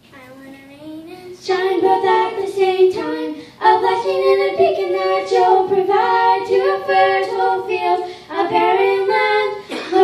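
Two girls singing a church song together into handheld microphones, holding long notes. The singing begins softly and grows louder about a second and a half in.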